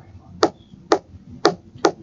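Stylus tapping on a tablet screen four times, about half a second apart, as letters are written.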